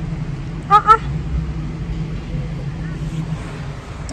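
A car engine idling with a steady low hum, which stops just before the end. A short, high-pitched "aa" comes just under a second in.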